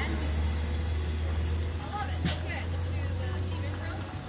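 A steady low mechanical hum, like a motor running nearby, with faint background voices and a short light click a little past halfway.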